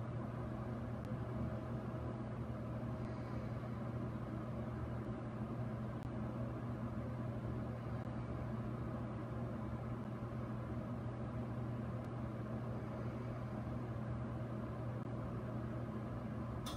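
Steady low machine hum with a faint hiss.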